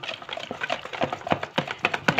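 A utensil beating a thick cream-and-mayonnaise mixture in a plastic bowl. It makes a quick, irregular run of wet clicks and taps, about six or seven a second.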